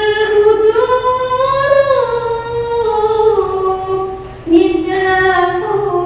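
A girl singing sholawat, an Islamic devotional song praising the Prophet, into a microphone with no instruments. She holds long ornamented notes that glide between pitches, takes a short break, and starts a new phrase about four and a half seconds in.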